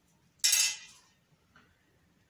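A single short, sharp clatter about half a second in, fading within half a second.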